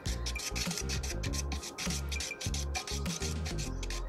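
Wet dental stone being stirred in a plastic cup, with quick repeated scraping strokes of the stirrer against the cup. Background music plays underneath.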